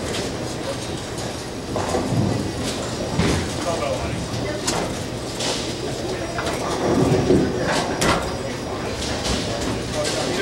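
Bowling alley din: the low rumble of balls rolling on the lanes, with sharp clatters of pins and pinsetter machinery and a louder rumble about seven seconds in, over background voices.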